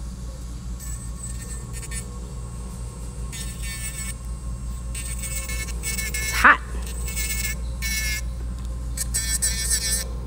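Electric nail drill (e-file) working around the cuticle of an acrylic nail: a steady low hum, with a higher-pitched whine coming and going in short stretches as the bit meets the nail. A short, louder tone sounds about six and a half seconds in.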